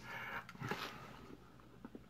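Faint mouth sounds of chewing jelly beans: soft breathing and a few small wet clicks in a quiet small room.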